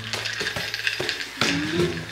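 Footsteps climbing a staircase, about one step every half second, over a steady low hum.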